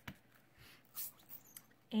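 A few faint soft taps and rubs of an ink pad being dabbed onto a clear stamp and lifted away, the clearest about a second in.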